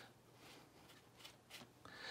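Near silence: room tone with a few faint soft scrapes of a wet watercolour brush working on paper.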